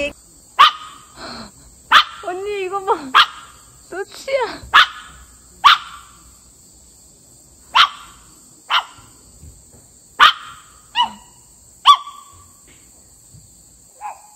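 A small dog barking repeatedly in short, sharp barks, about ten of them a second or so apart, with a pause around the middle. It is a house dog's alert barking at arriving strangers.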